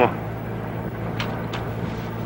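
Steady low engine drone of a vehicle with a faint even hiss, with a couple of faint clicks about a second and a half in.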